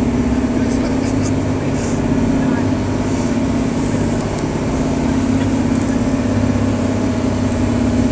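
Boat engines running steadily under way, a constant low drone with a steady hum, heard from inside the passenger cabin.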